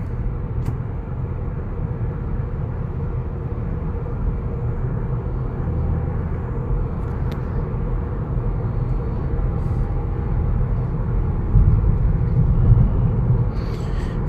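Mazda 6 on the move, heard inside the cabin: a steady low engine and road rumble, growing a little louder near the end.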